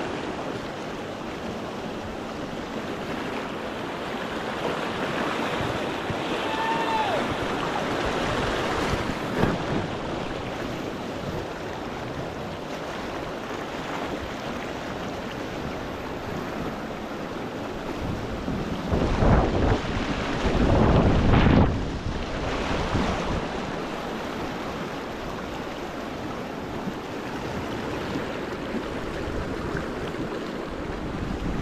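Rushing river rapids, a steady loud wash of whitewater. About two-thirds of the way through, a few seconds of low buffeting rumble rise over it, like wind on the microphone.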